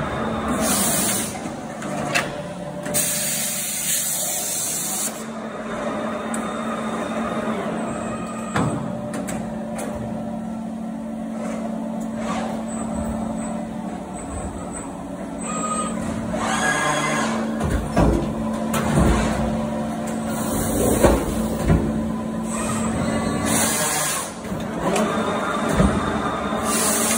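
Prima Power PSBB sheet-metal punching, shearing and bending line running: a steady machine hum with repeated bursts of compressed-air hiss. A few sharp clunks come through in the middle and later part.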